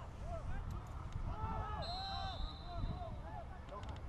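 Football players shouting to each other across the pitch, with one referee's whistle blast about two seconds in that holds briefly and fades.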